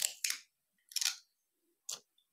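Sheets of joss paper being handled: four short crisp paper rustles, two close together at the start, one about a second in and one near the end.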